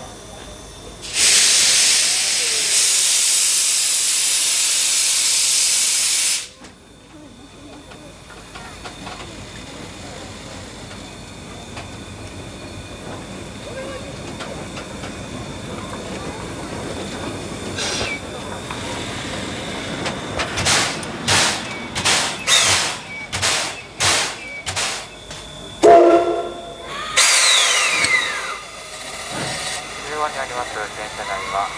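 JNR Class C56 steam locomotive (C56 160) blowing off steam with a loud, steady hiss for about five seconds. About eighteen seconds in, a quick run of sharp steam chuffs follows, roughly two a second, as steam blasts from the cylinders. Near the end come a brief louder pitched note and more hissing.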